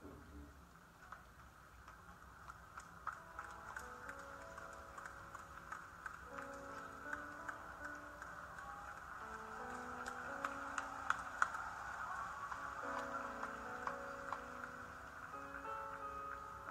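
Quiet slow music of held, sustained notes, growing louder, with scattered short sharp ticks.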